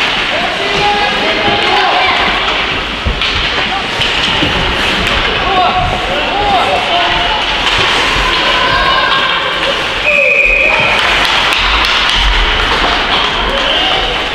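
Ice hockey rink sound during a youth game: voices of players and spectators calling out over the hall, with scattered knocks of sticks, puck and boards. About ten seconds in comes a short, steady, high whistle blast.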